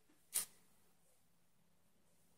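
A single short, sharp click a little under half a second in, against otherwise quiet room tone.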